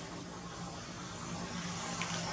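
Steady low drone of a distant motor engine under a constant hiss, getting slightly louder toward the end.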